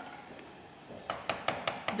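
A spoon tapping against a dish about five times in quick succession in the second half, knocking mashed potato off it.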